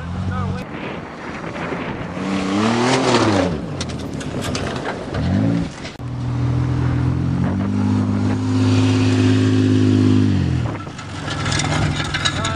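A 1994 Dodge Caravan minivan's engine revving hard off-road, its pitch rising and falling twice in the first few seconds, then held at high revs for about five seconds before dropping off near the end.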